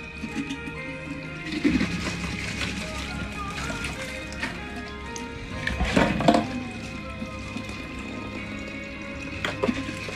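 Background music over tap water running and splashing into a stainless steel sink as plastic bottles are rinsed and handled, with sharp knocks of plastic against the sink. The loudest clatter comes about six seconds in.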